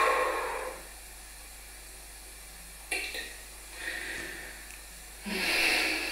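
A woman in labour breathing heavily through a contraction: a strong exhale at the start, a softer breath about four seconds in, and another strong breath near the end.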